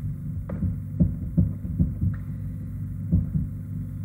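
Soft thumps, about six in irregular succession, from paging ahead through presentation slides on a computer, over a low steady electrical hum.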